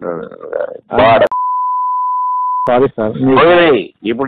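A single steady, high-pitched bleep of about a second and a half, switched in over a man's voice on a recorded phone call and cutting off abruptly; a censor bleep masking a word. Telephone-quality speech runs before and after it.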